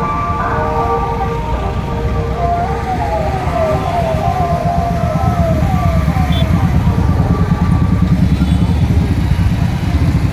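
Police vehicle siren through a roof-mounted loudspeaker: steady tones, then a repeated falling whoop about twice a second for several seconds. Under it runs a continuous rumble of motorcycle and vehicle engines, growing louder in the second half.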